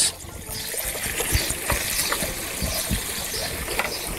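Raw prawns frying in hot butter in a frying pan: a steady sizzle with scattered small pops. It swells just after the start as the prawns go into the pan.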